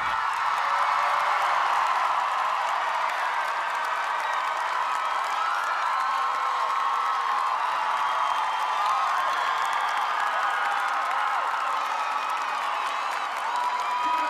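Theatre audience applauding and cheering: steady clapping with whoops and shouts rising over it.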